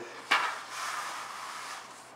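Wide push broom's bristles scraping across a concrete floor in one stroke. It starts sharply about a third of a second in and trails off over the next second.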